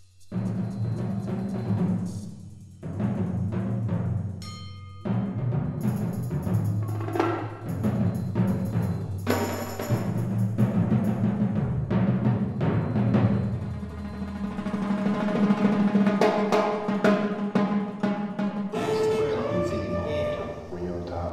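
Live solo percussion: timpani and drums struck in quick, busy strokes, with low timpani tones sounding underneath. It starts suddenly just after the beginning, and the playing runs on with a couple of brief dips.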